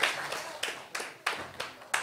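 Scattered hand claps from a small congregation, thinning out and fading away.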